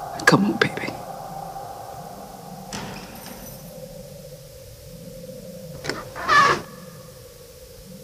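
Film sound design for a knocked-down boxer: a steady ringing tone that drops slightly in pitch about three seconds in. Brief muffled voices come and go over it, the clearest about six seconds in.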